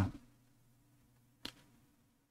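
The end of a spoken phrase fading out, then near silence broken once by a single short click about one and a half seconds in.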